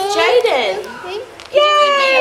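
Children's voices talking and calling out over one another, high-pitched, with a short lull about a second in before a child's voice comes in loudly again.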